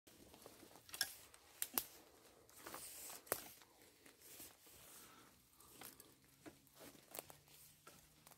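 Faint rustling and crackling of dry fallen leaves and twigs, with a few sharp snaps in the first few seconds, as a metal detector's search coil is swept low over leaf litter on a woodland floor.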